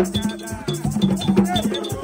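Haitian Vodou ceremonial drumming: hand drums beat a fast, steady rhythm, with a high metallic clink struck in time and a gourd rattle shaking along.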